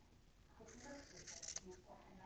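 Very faint snipping of scissors cutting through woven cotton fabric, with a couple of small clicks of the blades about a second and a half in; otherwise near silence.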